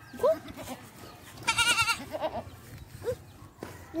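A goat bleating: one loud, quavering bleat about a second and a half in, lasting about half a second.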